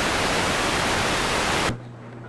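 Loud, even hiss of videotape static from a blank stretch of tape, cutting off suddenly near the end.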